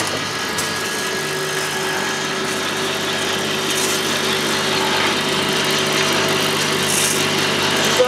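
E-liquid bottle filling and capping machine running, its conveyor and turntable drive motors giving a steady hum with a few faint clicks from the mechanism.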